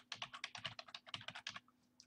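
Computer keyboard being typed on: a quick, even run of about a dozen keystrokes as a word is typed.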